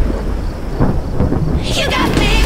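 Deep rumbling noise with a few soft hits: a transition effect in a promo soundtrack. A rising swish near the end leads back into pop music.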